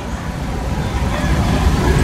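Low rumble of road traffic, growing gradually louder through the pause.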